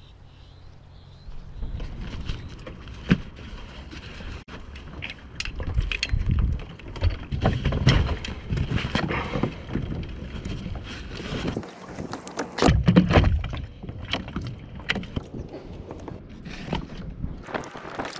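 Scattered knocks, clicks and rubbing of gear and rope being handled aboard a plastic pedal kayak, over a steady low rumble.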